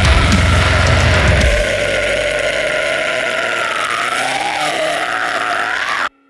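Heavy metal music: about a second and a half in, the pounding drums and bass drop out, leaving a held, distorted guitar note that wavers and bends in pitch. It then cuts off suddenly at the end.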